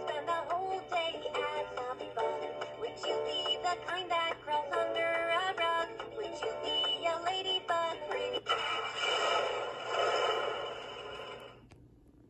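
Fisher-Price Little People Songs & Sounds Camper toy playing a short sung song with backing music through its small electronic speaker. About eight and a half seconds in, the song gives way to a noisy sound effect, which cuts off shortly before the end.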